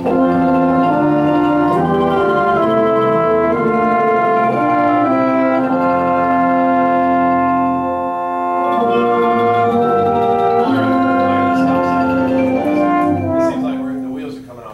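Instrumental ensemble playing a slow passage of held chords under a conductor's baton. The chords change every second or so, dip slightly around the middle, and are released near the end.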